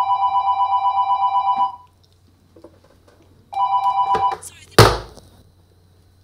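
Desk telephone ringing with a warbling electronic trill for about two seconds, then a second ring cut short after under a second. A single loud clunk follows just after.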